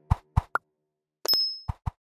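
Cartoon pop sound effects of a subscribe-button animation: two quick pops, a short high blip, a brief bright ding with a thin ringing tone about 1.3 seconds in, then two more pops.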